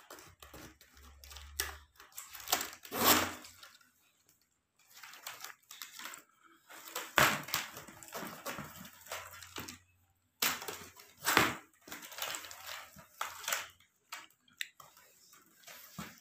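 Stiff plastic tape-wire strips rustling, scraping and clicking as they are bent over and tucked into the border of a woven tray, in irregular bursts that are loudest about three, seven and eleven seconds in.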